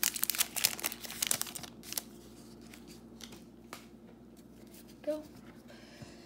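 Foil wrapper of a Score football trading-card pack being torn open. There is a dense flurry of crinkling and tearing over the first two seconds, which thins to a few scattered crinkles and then stops.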